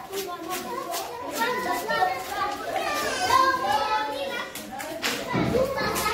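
A group of young children talking and calling out at once, several voices overlapping.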